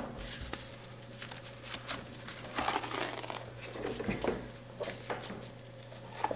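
A silicone mold liner being peeled away from a loaf of hot process soap: faint, scattered rubbery rustling and peeling noises, loudest about three seconds in, over a faint steady low hum.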